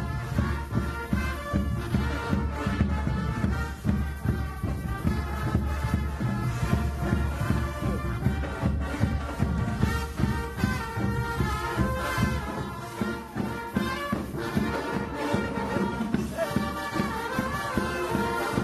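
Brass marching band playing outdoors, trombones and other brass over a bass drum struck with a mallet in a steady beat, kept in time with the band.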